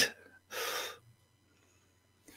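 A single short breath, about half a second long, close to a microphone. It follows a laugh and is followed by near silence.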